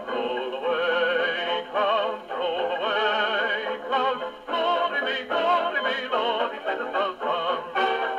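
A dance-band 78 rpm shellac record playing on an HMV 101J wind-up portable gramophone: a vocal with a wide vibrato over the band, in the thin, boxy sound of acoustic playback with no deep bass and no bright top.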